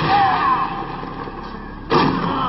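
Kung fu film fight soundtrack: a steady noisy background, then one sharp dubbed hit sound effect, the impact of a blow, just before the end.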